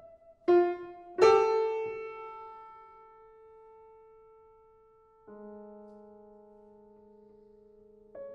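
Grand piano playing slow, spaced chords. Two are struck hard about half a second and a second in and left to ring and fade away over several seconds, then a softer chord about five seconds in is held.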